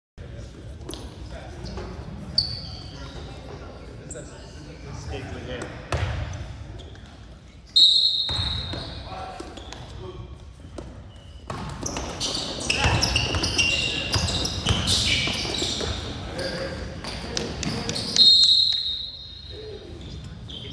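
Youth basketball game in a gym hall. A referee's whistle blows three short blasts, about two, eight and eighteen seconds in, the middle and last ones loudest. Between them come the ball bouncing on the court and voices shouting and talking, busiest in the middle of the stretch.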